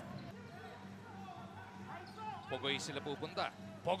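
A basketball bouncing on a hardwood court over a steady low hum, with players' voices coming in about two and a half seconds in.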